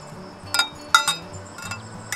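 A metal measuring cup clinks against the sides of a glass Pyrex measuring cup as it presses wood sorrel leaves down into hot water. There are three sharp clinks, each with a brief ring.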